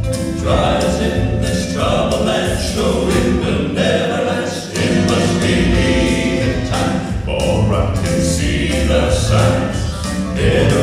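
Male southern gospel vocal quartet singing together with live piano accompaniment.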